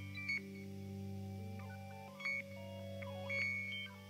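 Quiet passage of a live instrumental piece for electric guitar, cello and drums: a steady low drone under short, high, beep-like notes that bend in pitch, with no drum hits.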